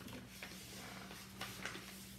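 Faint rustling and crinkling of paper as a thick folded paper packet of cards is handled and opened, with a few short, crisp crackles.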